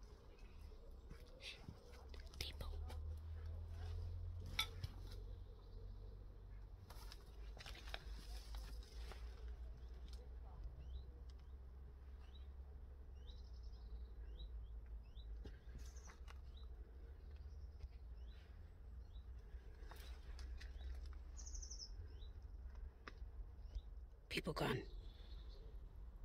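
Faint bird chirps: a run of short, high calls about once a second through the middle and later part, over a steady low rumble and scattered light clicks and rustles.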